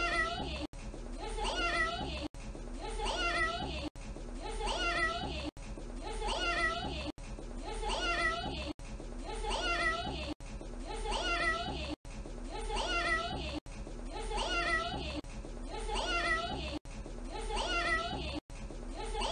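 A toddler saying "meow" in a cat-like voice, the same short clip looped over and over. The meow comes about every second and a half, with a brief cut to silence at each loop point.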